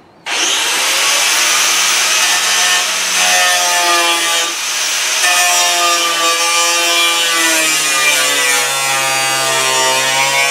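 A handheld power cutting tool running loaded as it cuts the sheet-metal floor of a Jeep TJ's body tub from underneath, with a steady high-pitched whine that wavers and sags in pitch as the cut bears down.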